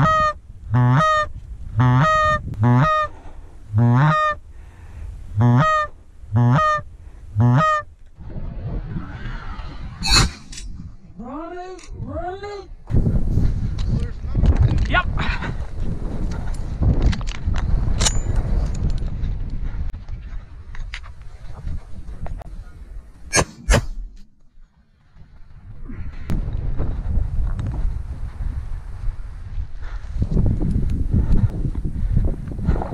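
Canada goose honks: a quick, even series of about a dozen in the first eight seconds, then a few rising-and-falling calls a few seconds later. Rustling and wind noise follow, with two sharp cracks close together past the middle.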